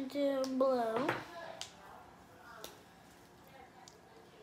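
A person humming a few held, level notes for about the first second, the last one sagging in pitch before a short upward slide; then it goes quiet apart from a few faint ticks.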